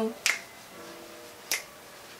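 Two sharp finger snaps, a little over a second apart, over faint background music.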